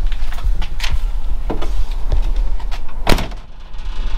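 A handful of clunks and knocks inside a van's cab, the loudest a sharp clunk about three seconds in, over a steady low rumble of handling noise.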